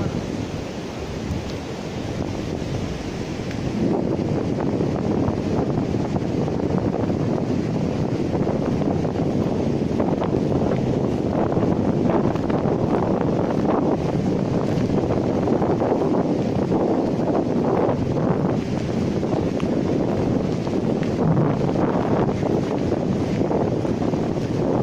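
Wind buffeting the microphone over the steady noise of surf breaking on a sandy beach, growing louder about four seconds in.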